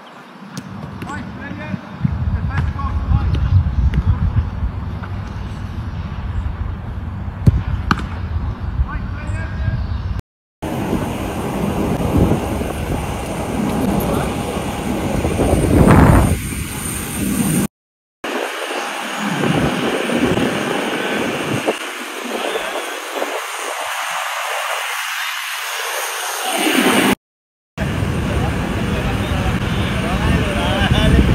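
People's voices over outdoor background noise, in several short segments split by brief silences.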